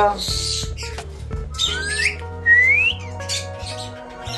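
Alexandrine parakeet whistling between its talking: a short harsh, hissy call about half a second in, then two rising whistles in the middle, one after the other.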